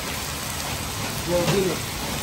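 Mutton pieces frying in oil in several karahi woks, a steady crackling sizzle. A brief voice sounds about one and a half seconds in.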